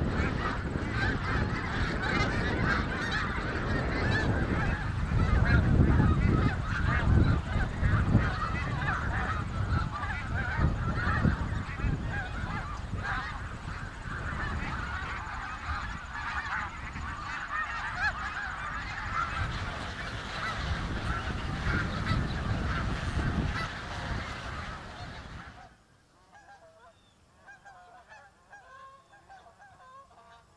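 A large flock of snow geese calling continuously in flight, many overlapping honks with a low rumble beneath. Near the end the sound cuts off abruptly, leaving only faint sound.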